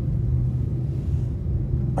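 Steady low drone of an airliner cabin in flight: the engine and airflow rumble heard from inside the passenger cabin.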